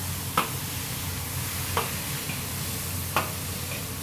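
Chopped chicken sizzling in a large iron wok as a long metal ladle stir-fries it. The ladle clanks against the wok three times, about every second and a half.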